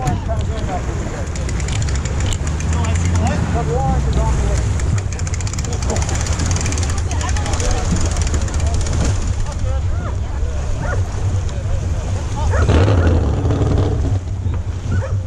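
An engine running at a low, steady rumble, with people talking faintly in the background.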